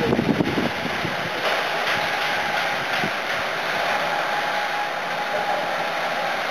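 Pressurised water fire extinguisher discharging: a steady rushing hiss of its jet spraying onto gravel.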